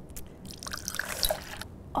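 Yellow liquid trickling from one glass test tube into another for about a second, the small pour used to top one tube up to the other's level.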